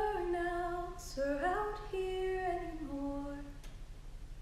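A woman singing unaccompanied, a wordless melody of long held notes. After a short break about a second in, the notes step down in pitch and fade out near the end.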